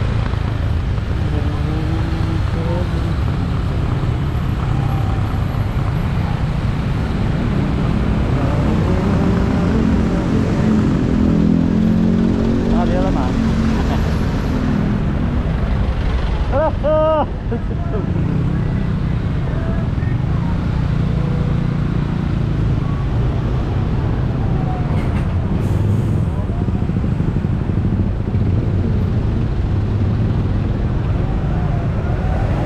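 Riding a motorbike in town traffic: the bike's engine running under a steady, heavy rumble of wind and road noise on the microphone, with passing traffic around it. A short horn beep sounds about halfway through.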